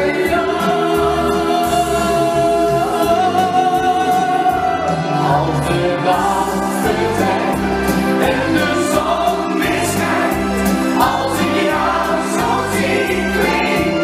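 A male singer singing a Dutch-language pop song live into a microphone over a backing track with a steady bass beat, holding one long note in the first few seconds.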